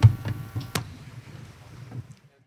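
Handling knocks and clicks at a lectern, picked up by its microphone: a sharp click at the start and another about three quarters of a second in, with low thumps between.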